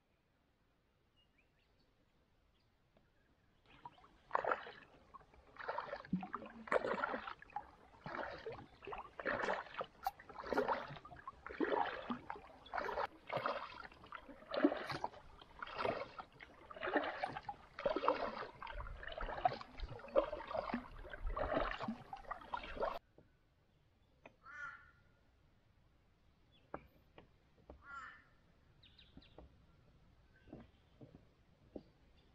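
Birds calling in a loud, dense chorus of harsh, repeated calls for about twenty seconds, which stops abruptly; a few faint single calls follow.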